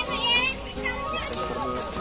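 Children's high voices calling out as they play, over steady background music.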